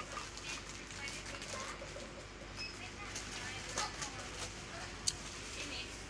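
Shop background noise: a steady low hum with faint distant voices, and small rustles and clicks of grocery packets handled in a plastic shopping basket, with one sharp click about five seconds in.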